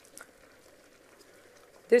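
Chopped red onion being scraped from a glass bowl into a pot of browned meat with a wooden spoon: a brief soft scrape about a fifth of a second in, then only a faint hiss from the pot. A woman starts speaking at the very end.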